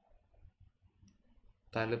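Near silence: quiet room tone with a faint tick about a second in, then a man's voice starts speaking near the end.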